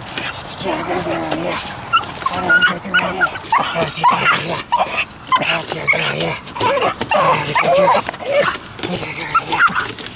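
Young pit bull whining and yelping in short, rising and falling cries while straining on a harness toward a muskrat in a rolling wire cage, worked up by high prey drive. Scattered scuffs and clicks from paws and the cage on gravel.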